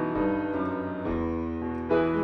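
Solo acoustic grand piano playing held chords, with a low bass note coming in about halfway and a new chord struck near the end.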